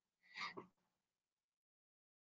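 Near silence: room tone, broken by one brief faint sound about half a second in.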